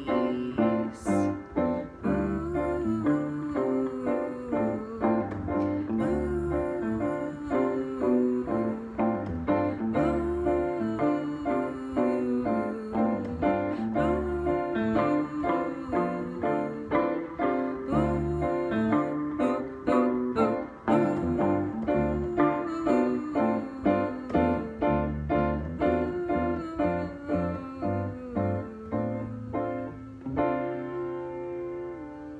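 Piano and guitar playing a song together, with steady rhythmic chords over a regular bass pulse.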